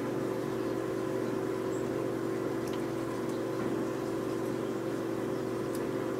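A steady hum with several fixed pitches, from a running small motor or appliance, broken only by a few faint clicks.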